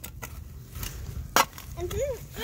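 Low rumble and rustle of the phone being handled close to its microphone, with one sharp click about a second and a half in.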